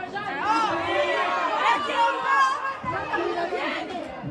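Several voices shouting and calling over one another, players and spectators at an amateur football match; the shouting swells just after the start and stays loud.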